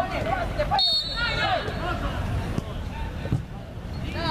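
Voices talking and calling out around a football pitch, with a short high whistle blast about a second in.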